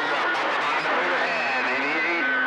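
Citizens band radio receiving skip on channel 28 (27.285 MHz): indistinct, overlapping voices of distant stations under a constant hiss of static. A low steady tone comes in about halfway through.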